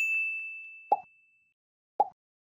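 Subscribe-animation sound effects: a bright bell-like notification ding that rings out and fades over about a second and a half, followed by two short click sounds about a second apart.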